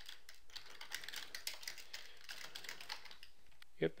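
Typing on a computer keyboard: a quick, uneven run of key clicks as a command is entered.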